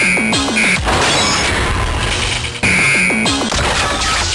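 Powered Builder Buckle transformation sound effects played by a flash-belt simulator: loud synthesized crashes and clangs over music. There are two similar bursts, one at the start and one about two and a half seconds in, each followed by quick falling tones.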